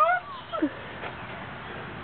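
A person's high, drawn-out shout of "Peacock!", the pitch rising and then dropping about half a second in, followed by quiet outdoor background.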